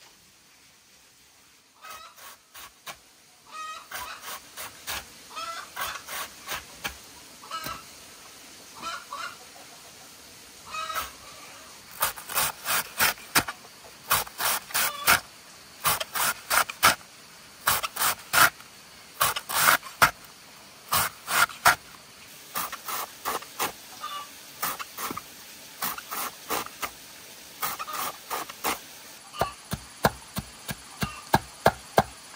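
Domestic ducks quacking: many short calls, sparse at first and coming thick and loud from about twelve seconds in.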